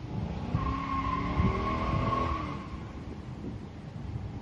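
LS V8 in a 1995 Impala SS revving under load, with a steady tire squeal from about half a second in until past two seconds, the sound of a burnout.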